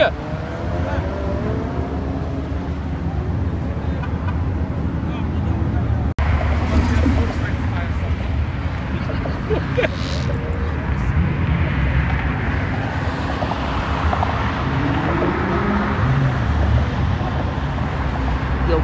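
Many stopped cars idling with a steady low rumble, with the voices of a crowd gathered among them.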